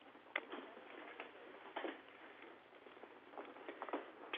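Faint steady hiss on a narrow, telephone-like audio link, with a few scattered short clicks and ticks.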